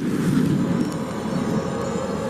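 Sound-design intro of a video with animated light trails: a dense, low rumble that starts suddenly just before and holds steady.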